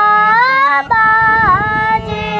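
A young girl singing a melodic phrase in raag Asavari, her voice gliding up and then dipping, with a harmonium playing steady held notes beneath.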